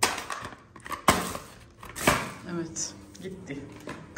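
Cardboard medicine boxes and blister packs being handled and set into a plastic basket. There are three sharp knocks, near the start, about a second in and about two seconds in, with soft rustling between them.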